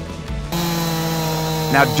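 Chainsaw cutting in about half a second in and running at a steady high speed, ripping a cedar log lengthwise along a 2x4 edge guide to cut a flat face.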